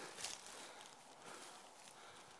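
Quiet woods with faint rustling in leaf litter, with one brief louder rustle shortly after the start.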